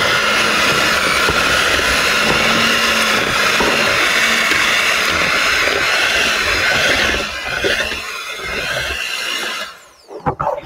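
Hamilton Beach electric hand mixer running steadily on low speed, its beaters churning thick cream cheese and salsa; the motor switches off near the end.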